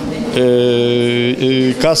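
A man's voice holding a long, level hesitation sound ("ehh") for about a second, then a word near the end.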